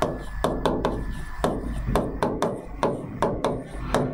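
A pen or stylus tapping and knocking on the glass of an interactive display as words are handwritten on it: sharp, irregular taps, several a second.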